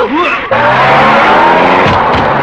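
A brief cry at the start, then from about half a second in, a car's tyres screech in a long skid over its running engine.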